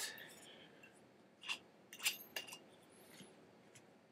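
A few faint, short glass clinks and light knocks from a vermouth bottle and glassware being handled, three of them close together in the middle, with a faint high ring afterwards.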